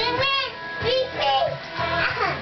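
A young boy singing, with recorded music playing behind him.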